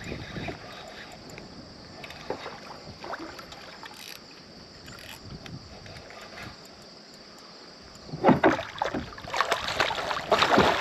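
A hooked channel catfish thrashing and splashing at the water's surface beside a kayak. The splashes come loudly and in a rapid series near the end, after several seconds of only faint water and handling sounds.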